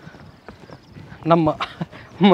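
Footsteps on stone paving, a few faint separate steps, and a short burst of a voice about a second and a half in.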